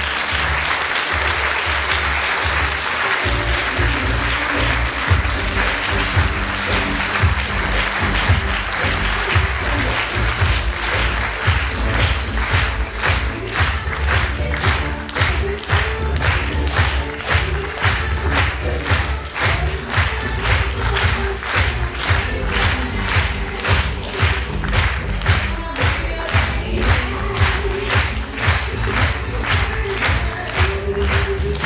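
Audience applause over pop music with a heavy bass beat, which comes in strongly about three seconds in. From about halfway on the clapping falls into a steady rhythm, about two claps a second.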